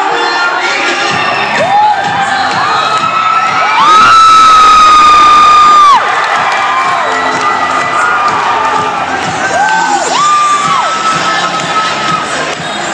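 Gymnasium crowd of students cheering and shouting, with shrill held screams rising out of it: the loudest lasts about two seconds in the middle, with shorter ones near the end.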